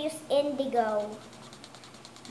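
A young girl's voice for about the first second, then quiet room tone.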